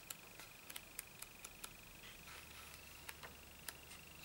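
Faint, scattered ticks and light paper handling as the pages of a small sewn-bound hardcover diary are turned by hand.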